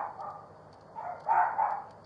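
A dog barking: a short bark about a second in, then a pair of barks close together.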